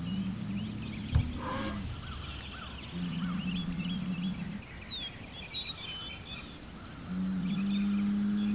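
A bull bellowing in long, low, drawn-out calls, three of them, the last the loudest and still going at the end: bull-to-bull challenge calls to rival bulls nearby. A sharp thump comes about a second in, and small birds chirp throughout.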